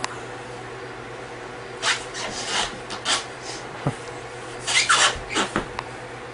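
A man pinned in an arm lock on the floor, straining to get up: short bursts of strained, breathy exhalation, in two clusters about two seconds in and again around five seconds.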